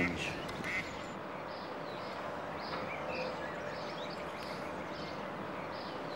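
Mallard ducks quacking a few times over a steady outdoor background hiss.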